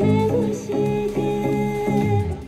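A woman singing a song into a microphone over an instrumental accompaniment, holding long notes over steady chords.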